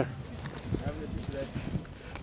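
Footsteps of several people walking on dry leaves and twigs on a forest floor, an uneven run of soft crunches and knocks, with faint low voices in the middle.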